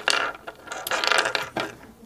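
Handling noise from small lavalier microphones and their cables being moved and knocked about on a wooden tabletop. There is a short spell of rattling and scraping at the start and a longer one about a second in.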